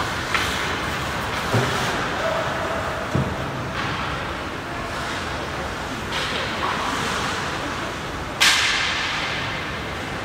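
Ice hockey rink noise heard from beside the boards: a steady hiss of skates on the ice with a few light knocks, and one loud sharp crack about eight and a half seconds in, ringing briefly as something strikes the boards.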